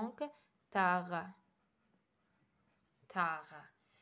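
A pen writing a short word by hand on a textbook's paper page, a faint scratching on the paper between a few drawn-out spoken syllables.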